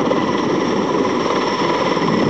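Mil Mi-26 twin-turbine heavy-lift helicopter in flight: a fast, steady rotor chop over a steady high turbine whine.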